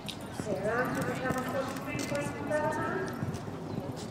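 Hoofbeats of a horse cantering on a sand show-jumping arena. A high-pitched call rises and falls over them from about half a second to three seconds in.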